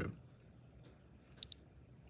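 A CareSens N blood glucose meter gives one short, high beep about a second and a half in. The beep signals that the test strip has drawn up enough blood and the meter has started its five-second measurement countdown.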